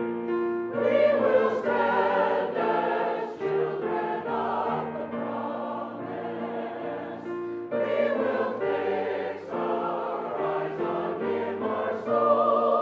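Mixed church choir of men and women singing together in held chords, the phrases swelling louder about a second in and again near eight seconds.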